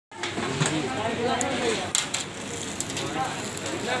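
People's voices talking over a steady hiss, with a few sharp clicks in the middle.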